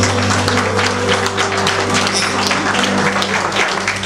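Audience applauding as a live country band's final chord rings out under the clapping.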